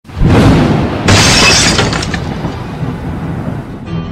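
Loud crash sound effect: a sudden boom, then a second, brighter shattering burst about a second in, trailing off over the following seconds, over music.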